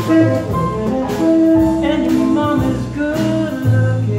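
Small live jazz band playing, with saxophone, upright bass and drums behind a male singer.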